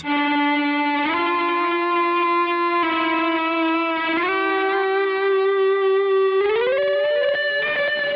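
Electric guitar sounded with an EBow, holding smooth, endlessly sustained notes with no pick attack, run through distortion, a filter and delay. The pitch slides up between notes about a second in, again around four seconds, and in a longer glide near the end.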